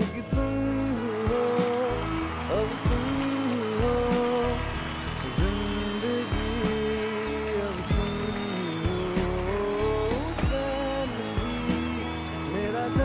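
Male vocalist singing a slow melody of long held notes with sliding pitch, over acoustic guitar strumming.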